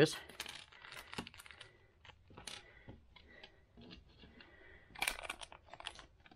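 Small clear plastic parts bags crinkling as they are opened and handled, with light clicks of small micro switches tipped out onto a hard tabletop; a louder burst of crinkling about five seconds in.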